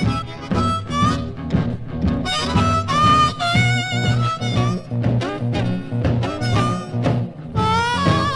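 Blues harmonica playing an instrumental intro with bent, wavering notes over an electric blues band of guitars, upright bass and drums. It is a 1957 Chicago blues recording played from a vinyl record.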